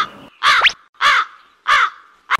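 Crow cawing sound effect: four short caws, about two every second, with a quick rising whistle alongside the second caw.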